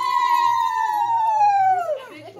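A single long, high, clear tone held steady, then sliding down in pitch and dying away near the end.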